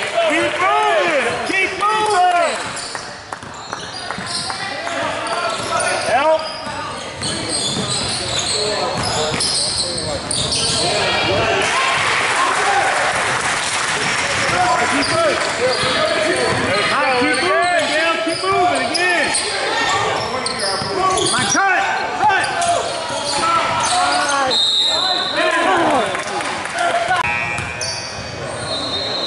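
Basketball game on a hardwood court in a large gym: the ball bouncing, sneakers squeaking and players and spectators calling out, all echoing in the hall.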